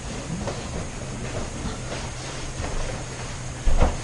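Steady low hum of room noise with faint shuffling. Near the end comes a single short, louder thump from a pair working a bear-hug escape.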